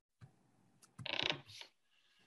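A short creak or rattle lasting about half a second, about a second in, with a fainter tail after it and quiet around it.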